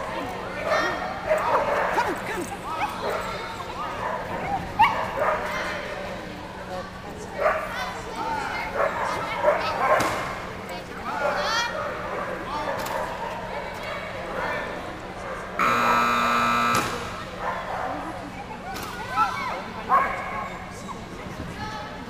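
Dogs barking and voices calling out in a large arena while a dog runs an agility course; about 16 s in an electronic buzzer sounds once for about a second.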